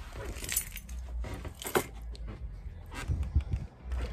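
Scattered light clicks and small metallic rattles of handling as the phone is carried to the trailer's open doorway, over a steady low rumble.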